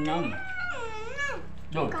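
A young child's high-pitched, drawn-out vocal cry of about a second, wavering and then sliding down in pitch.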